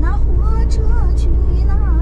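Steady low road and engine rumble inside the cab of a moving camper van, with a faint voice over it.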